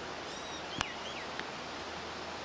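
Steady rush of a river flowing over rocks below, with a few brief high chirps in the first second and a half and a single sharp click a little under a second in.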